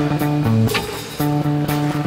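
Live rock band playing electric guitar and bass guitar without vocals: held notes that change pitch in steps, with a few cymbal strokes and a brief dip in volume midway.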